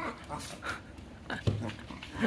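Two Shiba Inus play-fighting, one giving several short, irregular vocal bursts in quick succession as it lunges open-mouthed at the other.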